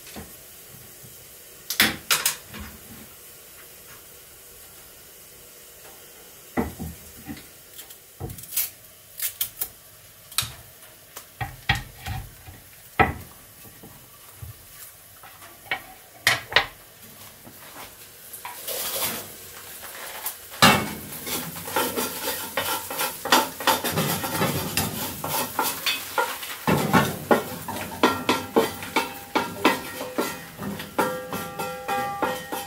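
Metal utensils clinking and scraping against pots and pans, scattered knocks at first. About two-thirds of the way in, a steady sizzle of food frying joins under the clinks.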